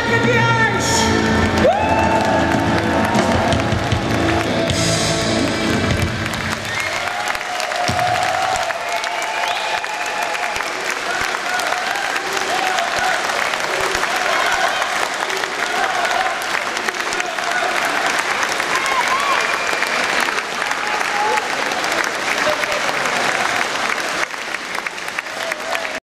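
A live pop band and female singer end a song, with a held sung note; the music stops about six seconds in. After that, audience applause and cheering with scattered shouts.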